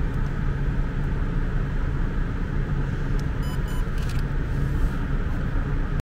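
Steady low background rumble, with a few faint light clicks about three and a half seconds in.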